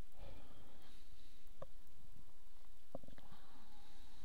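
Steady low background noise with a soft rumble just after the start and a few faint clicks: one about a second and a half in, and two close together about three seconds in.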